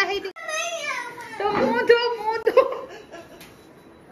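A young girl's high-pitched voice calling out and talking briefly, the pitch sliding down at the start.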